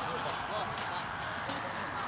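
Faint, indistinct voices of people talking in the background over a steady outdoor noise.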